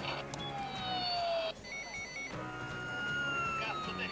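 Electronic sound effects from a Mega Creative 'Moje miasto' toy ambulance, set off by a press of its button: slowly falling tones, with a short rapid two-tone warble about halfway through.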